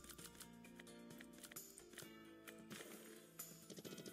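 Faint slot-game music with steady, stepping notes and a few light clicks, from the Sweet Bonanza 1000 video slot as the bet is set and a spin starts.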